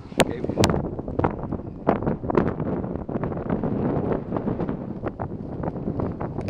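Wind buffeting the microphone in an uneven, gusty rumble, with two sharp clicks in the first second.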